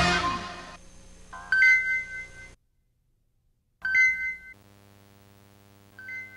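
A short bell-like logo chime of two held tones rings about one and a half seconds in and again near four seconds, with a second of silence between. After the second chime a low steady hum runs on.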